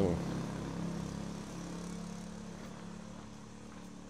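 A vehicle engine's steady low hum, slowly fading away.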